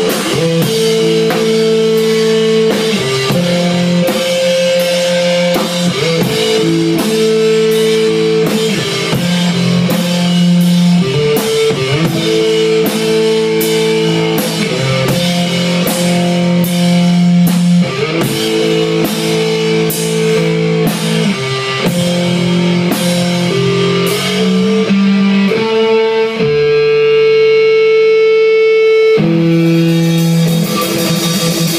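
Live rock band: electric guitar playing riffs over a drum kit with steady cymbal beats. About four seconds before the end, the drums drop out while the guitar holds ringing notes, and then the drums come back in.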